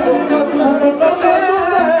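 A man singing into a microphone over music with a steady beat.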